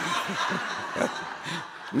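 A roomful of people chuckling and laughing together at a joke, the laughter easing off near the end.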